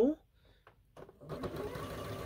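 Electric sewing machine starting to stitch about a second in and running steadily with a faint even whir as a seam is sewn through quilt fabric.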